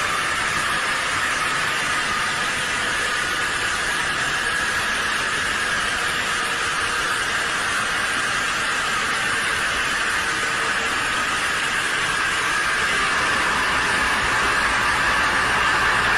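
A steady hissing rush of noise with no rhythm or pitch, swelling slightly louder near the end.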